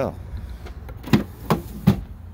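Three short knocks about a third of a second apart, over a low steady hum.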